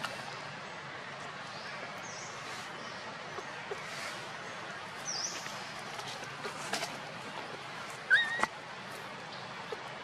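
Baby macaque giving one short, rising call about eight seconds in, over a steady background hiss, with a few faint high chirps earlier.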